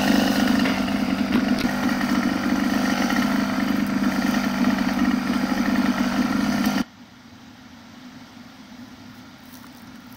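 Small engine idling steadily, then cutting off abruptly about seven seconds in.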